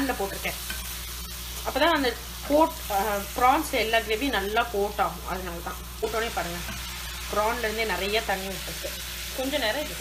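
Marinated prawns sizzling in hot oil in a non-stick frying pan as a slotted wooden spatula stirs and turns them, scraping against the pan with many short pitched squeaks.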